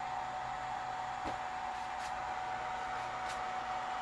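Steady whirring hiss with a constant mid-pitched tone from the cooling fan of a MakeSkyBlue MPPT solar charge controller running under load.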